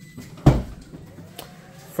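Toyota bZ4X power liftgate unlatching with a single loud thunk about half a second in, followed by a faint whine and a smaller click as its motors begin raising the hatch.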